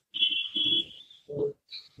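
A steady high-pitched beep-like tone lasting about a second, with faint low voice sounds around it.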